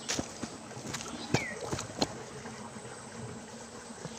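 A few footsteps on dry dirt close to the microphone: light, irregular knocks over the first two seconds as a person walks past, then faint outdoor background.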